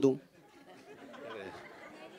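A man's question ends just as it begins, followed by a faint murmur of many voices chattering in a large room.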